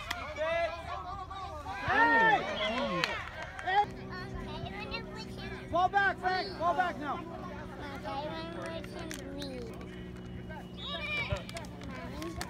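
Indistinct voices of people on the sideline calling out and chatting, loudest in the first few seconds. A steady low hum sets in about four seconds in underneath them.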